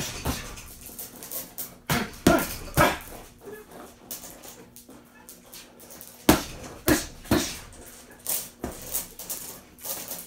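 Boxing gloves hitting a heavy punching bag with slaps and thuds. The punches come in quick combinations of two or three, with short pauses between them.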